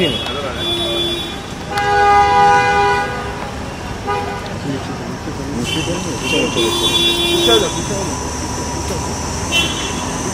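Vehicle horns honking in street traffic: a long honk lasting about a second, starting about two seconds in, is the loudest sound, with shorter honks before and after it.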